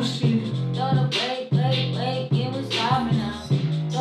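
Music: a produced beat playing, with regular drum hits under steady bass and pitched instrument notes, and a wordless sung melody over it.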